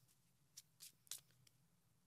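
Near silence, with a few faint soft clicks of tarot cards being shuffled by hand in the first half.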